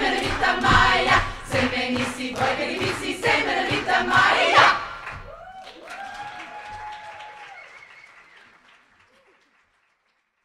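Women's choir singing a cappella with applause, the singing breaking off about five seconds in; a faint cheer follows as the sound fades out.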